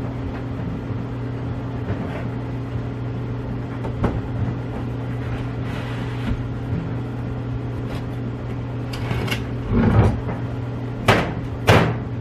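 Household supplies being put away: plastic canisters, jugs and a plastic bag handled and set down on a shelf, giving scattered knocks and rustling clatter, the loudest ones near the end. A steady low hum runs underneath.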